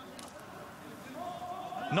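Pitch-side sound of a football match played in an empty stadium, with no crowd: a faint, hollow background, and from about halfway a single long call held on one note, like a player or coach shouting across the pitch.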